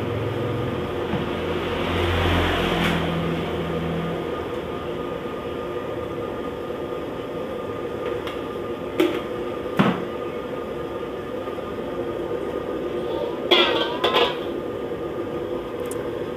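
Steady roar of the gas burner under a wok of frying oil as it heats, with a faint hum running through it. A couple of sharp clicks come about midway, and a brief clatter comes near the end.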